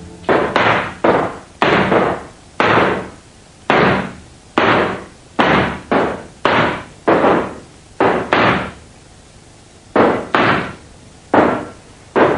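Pistol shots fired one after another on an indoor range, about two a second, each with a short echo off the range walls. There is a pause of about a second and a half late on before the firing resumes.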